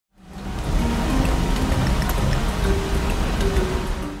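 Intro music fading in over a dense, rain-like hiss, with a few sustained low notes that shift in pitch.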